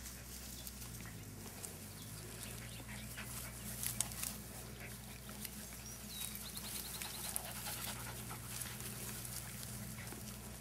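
Dachshund panting, with light scuffling and a few sharp clicks from puppies wrestling; a faint steady low hum runs underneath.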